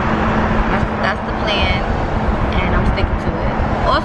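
Car cabin noise while riding: a steady low rumble of road and engine noise with a faint steady hum, and brief snatches of voices.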